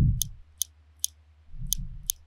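Computer mouse button clicking four times at uneven intervals, short sharp clicks, over a faint low steady hum.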